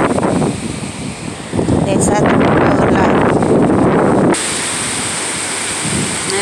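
Strong gusty wind buffeting a phone's microphone, a loud rumbling rush that eases briefly about a second in, surges again, then drops off suddenly about four seconds in to a steadier, lower rush.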